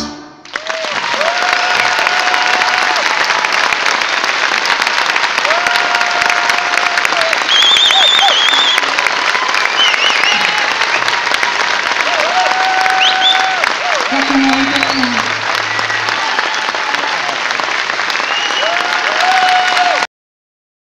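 Concert audience applauding steadily as the band's music ends, with several long drawn-out calls from the crowd rising over the clapping.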